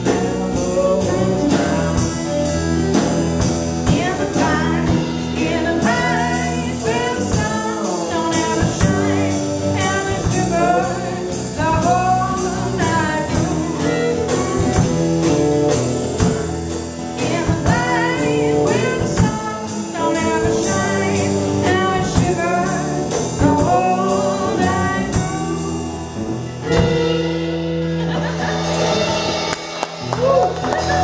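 Live band playing: a fiddle melody over acoustic guitar, electric bass and a drum kit keeping a steady beat. Near the end the beat stops and the band holds a final chord under a cymbal wash.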